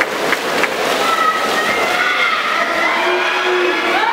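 Spectators cheering and shouting at a swimming race in an indoor pool, with sustained shouts over a steady noise of splashing swimmers.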